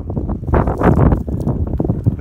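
Wind buffeting the microphone: a loud, irregular low rumble with uneven knocks.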